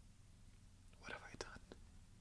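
Near silence, then about halfway through a brief, faint breathy sound with a few small mouth clicks.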